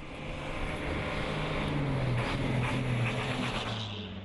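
A heavy truck engine running as the truck drives past on a dirt road, with tyre and road noise. The sound swells toward the middle, the engine note drops a little about two seconds in, and it fades near the end.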